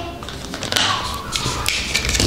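Plastic surprise egg being pulled open by hand: a handful of short, sharp plastic clicks as the two halves of the shell come apart.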